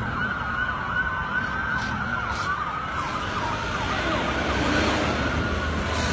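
Several police car sirens sounding at once, their rising and falling wails overlapping, over the rumble of traffic; they grow a little louder after about four seconds.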